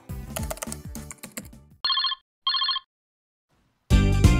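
A telephone ringing: two short electronic trilling rings about half a second apart, as a call is placed. Music fades out before the rings, and new music comes in loudly just before the end.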